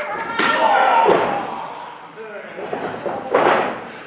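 A wrestler slammed down onto the ring canvas: a heavy impact on the mat about half a second in and another loud crash near the end, with shouting voices around them.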